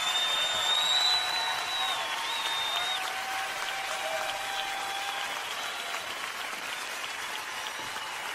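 Large concert audience applauding and cheering at the end of a song, slowly dying down.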